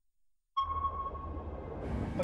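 Submarine sonar ping: one sudden high tone about half a second in that rings and slowly fades, over a low rumble. A hiss rises near the end.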